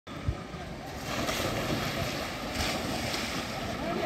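Water splashing as swimmers dive into a pool and start swimming, rising about a second in, with wind buffeting the microphone. A short thump comes just before the splashing.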